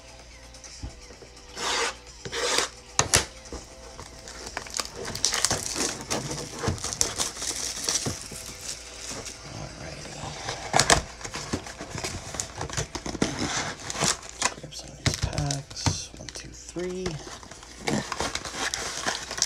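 Plastic wrap and cardboard packaging crinkling and tearing as a sealed trading-card hobby box is opened and its foil packs are taken out, with irregular sharp rustles and snaps throughout.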